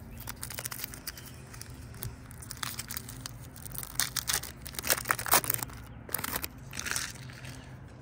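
Crinkly wrapper of a 2007 Topps baseball card pack being torn open and crumpled by hand: a run of irregular crackles and rips, busiest about halfway through, over a low steady hum.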